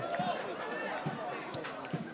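Faint voices of players and spectators at a football pitch, calling and shouting. A single sharp knock comes near the end.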